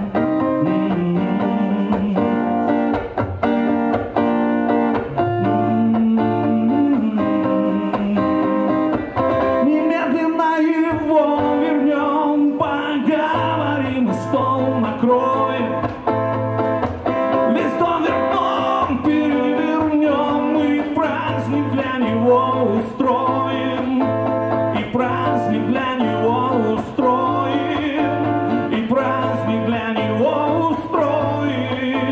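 Live song on electric guitar: steady strummed chords for the first ten seconds or so, then a wavering melodic line over a steady low note for the rest.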